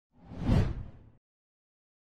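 Whoosh sound effect of a title animation: a single swell that peaks about half a second in and fades out by just over a second, with a heavy low end under the hiss.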